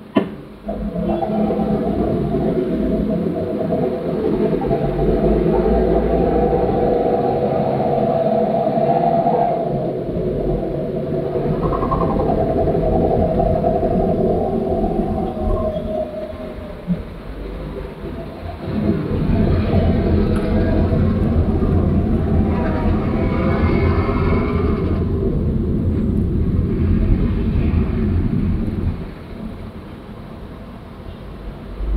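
Engines of heavy trucks rumbling close by in slow road traffic, with a moaning whine on top. It starts suddenly with a click, dips for a couple of seconds a little past halfway, and drops away just before the end.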